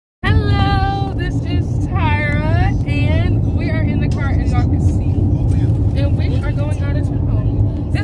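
A girl's voice, loud and animated with long drawn-out gliding calls in the first three seconds, over the steady low rumble of road and engine noise inside a moving car's cabin.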